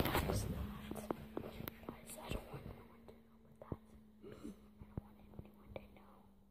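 A person whispering close to the microphone, loudest in the first second, with scattered light clicks and a faint steady low hum underneath.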